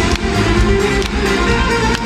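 Czech folk band playing live in a large hall, with a fiddle over a steady beat, recorded from the audience.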